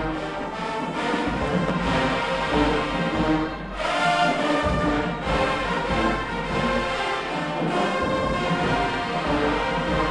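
A large marching band's brass section, with sousaphones and drums, playing held chords that change every second or so, over low bass drum hits.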